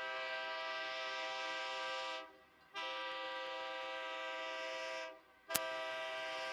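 Diesel locomotive's multi-note air horn blowing two long steady blasts of about two seconds each. A third blast starts just after a sharp click near the end.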